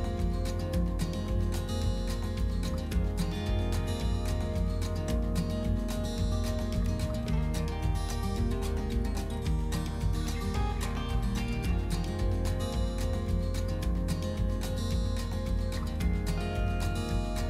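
Background music with held tones.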